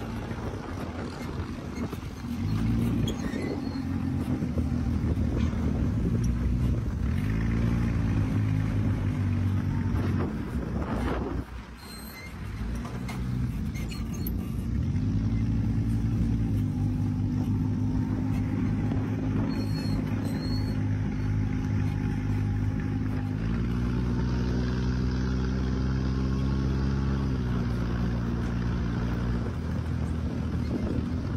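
Dune buggy engine running under way across desert sand, its drone climbing and dropping in pitch several times as the throttle changes, with a brief let-off about eleven seconds in. Wind noise rushes over it.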